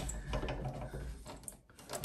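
A key turning in a door lock, with keys on a ring clinking: a few small sharp clicks.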